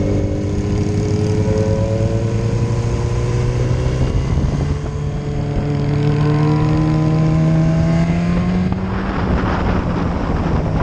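Sport motorcycle engine running under power through curves, its pitch climbing slowly. The pitch steps up about four seconds in and drops about nine seconds in, and a rush of wind noise comes up near the end.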